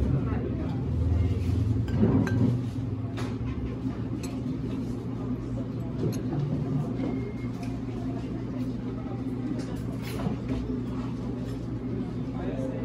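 Cafe background: a steady low hum with murmured voices and occasional light clinks of china.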